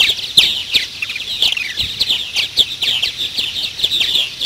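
Purple martins calling at a nest colony: a steady run of quick, downward-sliding chirps, several a second.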